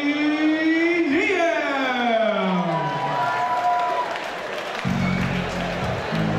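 A male ring announcer on a hall PA microphone stretches out a fighter's name in one long drawn-out call, held and then sliding down in pitch over about two seconds. About five seconds in, walk-out music with a steady beat starts.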